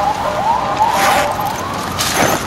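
Siren yelping in quick repeated rising sweeps, with a brief rustle about a second in.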